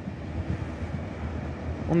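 Class 390 Pendolino electric train approaching the station, a steady low rumble of the train on the track.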